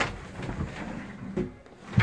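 Interior door inside a motorhome being moved shut to close off the bedroom, with a click as it starts, a low rubbing noise as it moves, and a sharper knock at the end as it shuts.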